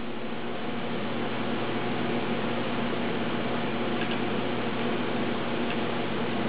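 Steady whirring hiss with a couple of faint ticks late on: a Toshiba Libretto 50CT laptop's hard drive running and seeking as the machine resumes from suspend-to-disk.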